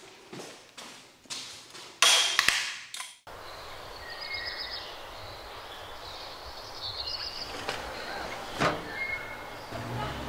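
A short loud rustling clatter, typical of a door or of someone moving about, that cuts off suddenly about three seconds in. It is followed by steady outdoor background hiss with a few faint high chirps and a single knock near the end.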